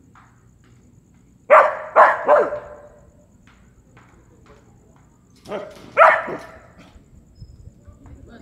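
A dog barking: three sharp barks in quick succession, then a pause and two more barks.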